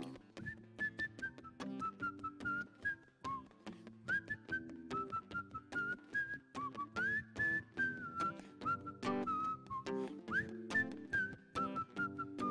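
A man whistling a melody of held notes with small slides between them, over his own acoustic guitar strummed in a steady rhythm: an instrumental break between the verses of a song.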